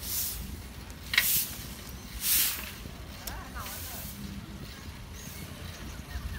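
Wind buffeting a phone microphone on a moving bicycle, a steady low rumble, broken by a few short hissing bursts, the loudest about a second and two seconds in.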